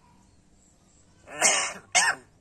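Caged hill myna giving a loud, harsh call lasting about half a second, followed at once by a second, shorter call near the end.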